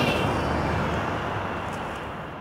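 A steady rumbling noise that fades away gradually.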